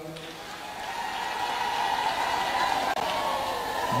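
Audience applauding and cheering in response to a announced pledge, the crowd noise building steadily louder.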